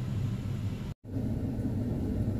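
Car engine idling, heard inside the cabin as a steady low rumble; it drops out for an instant about halfway through.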